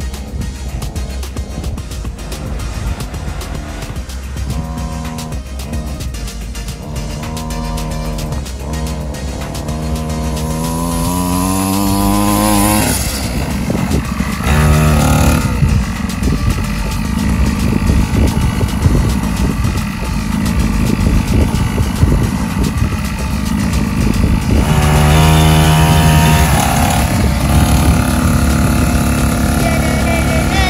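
X-PRO 50cc mini dirt bike engine revving, its pitch climbing steadily as the bike accelerates, then dropping off sharply about 13 seconds in. It revs up again briefly about 25 seconds in.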